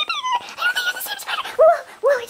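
A woman's voice, sped up to a high chipmunk-like pitch, making short wordless whining sounds.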